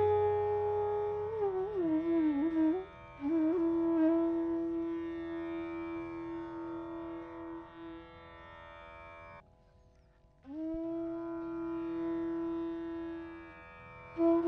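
Bansuri (bamboo transverse flute) playing slow phrases of raga Yaman: a few gliding, ornamented turns, then long held notes that fade, a brief pause about two thirds of the way in, and another long held note. A steady drone sounds underneath, and the tabla is silent.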